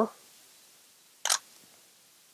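A single shutter release of a Canon EOS-1D X DSLR: one short, crisp click about a second in as a frame is taken.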